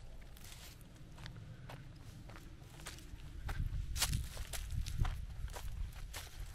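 Footsteps on dry leaves and cut twigs of logging debris, sparse at first, then louder and more frequent from about halfway.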